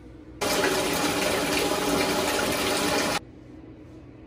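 Water running hard from a bathtub tap into the tub, starting suddenly and cut off after about three seconds.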